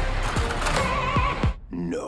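Television static hiss under trailer music, cutting off sharply about one and a half seconds in, followed by a short voice.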